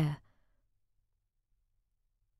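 A narrator's voice trails off at the end of a word in the first moment, then near silence: a pause in audiobook narration.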